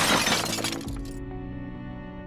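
A glass-shattering transition sound effect that hits suddenly and fades out within about a second, over steady background music.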